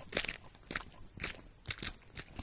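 Cartoon sound-effect footsteps on pavement: a string of short, crunchy steps, a few a second, uneven in spacing and loudness.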